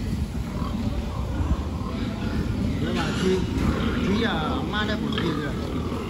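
Pigs grunting in a crowded pen over a steady low rumble, with a few higher calls that bend up and down from about three to five seconds in.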